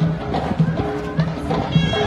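Traditional folk music led by a bagpipe, with a held drone note and a drum keeping a steady beat of about three strokes a second, mixed with voices.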